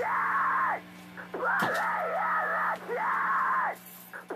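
Recorded music, not played live: a thin, radio-like filtered warbling phrase repeats about every second and a half, over a steady low amplifier hum.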